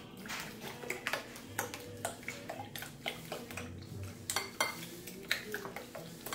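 A wire whisk beating a liquid egg, cream, milk and sugar mixture in a glass bowl. The wires click against the glass in quick, irregular strokes.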